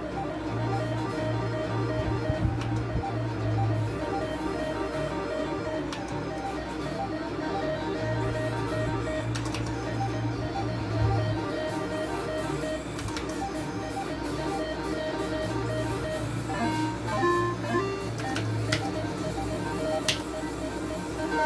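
Slot machine's electronic game music playing as a steady, looping tune, with a few short beeps near the end.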